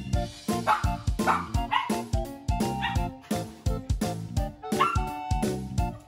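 Background music with a steady beat, over which a bichon frise barks a few times, mostly in the first two seconds and once more near the end.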